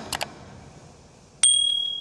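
Subscribe-button overlay sound effect: a couple of quick mouse clicks, then about a second and a half in a loud, high notification-bell ding that holds one steady tone and cuts off short.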